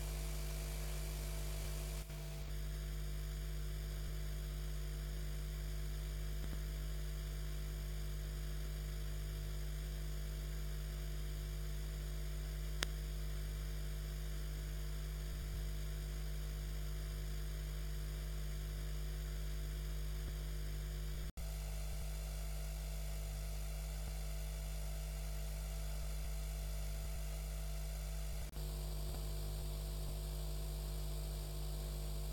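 Steady electrical mains hum on the audio line, a low buzz with a faint hiss over it and no program sound. The feed briefly drops out about two seconds in, again about two-thirds of the way through and once more near the end, and there is a single click near the middle.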